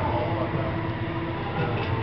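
Steady low mechanical rumble with a faint hum.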